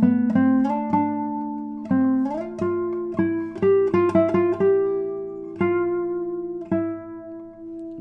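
Spruce-topped, radial-braced 2023 Robin Moyes nylon-string classical guitar played as a slow single-note melody on the G string, with a silky tone and long sustain. A couple of notes slide up into the next, and the last few notes ring for about a second each.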